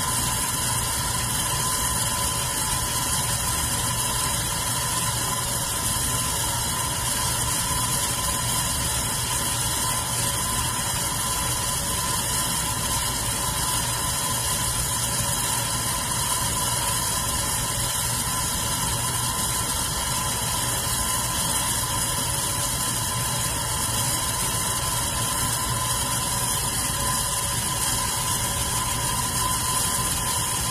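Red metal electric fan running steadily: an even rush of air over a motor hum, with a constant high tone.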